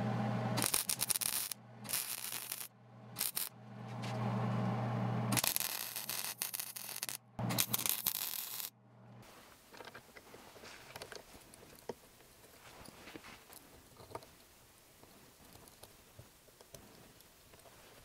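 MIG welder laying short tack welds around a steel nut pressed into a small starter coupling: several bursts of steady hum and crackle over the first nine seconds, with short gaps between them. Then faint small scrapes and clicks as the welded metal piece is fitted by hand onto the flywheel hub of a model V-twin engine.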